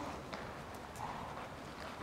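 Faint hoofbeats of a horse trotting on the sand footing of an indoor arena, as soft scattered thuds.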